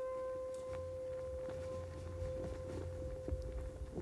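A single held musical note, steady in pitch, slowly fading and ending near the end. From about a second in, a low rumble and scattered light taps come up beneath it.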